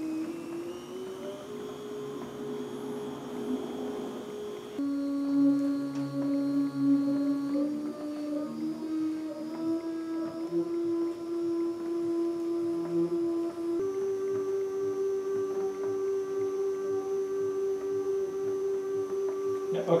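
Stepper motor driving a homemade honey extractor, whining in steady tones whose pitch changes in steps as its speed is turned up from about 50 toward 115 RPM. The pitch rises early on, drops about five seconds in, then climbs in stages, with a jump about three-quarters of the way through.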